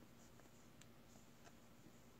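Near silence with faint light ticks from bamboo knitting needles working stitches, two of them a little under a second apart near the middle.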